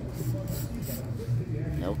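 Short hisses of a K80 aerosol spray can being sprayed into the inside of a valve cover: two brief bursts in the first second. A steady low hum runs underneath.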